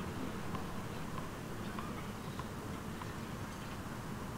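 A tennis ball bounced repeatedly on a hard court by the server before serving: faint, evenly spaced ticks, nearly two a second, over the low murmur of the crowd.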